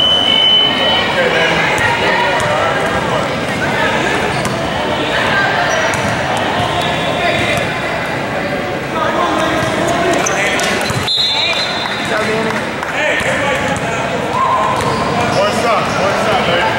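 Many voices of players and spectators talking in a large gym, with a basketball being bounced on the court floor as a player readies a free throw. A short, high whistle tone sounds at the very start.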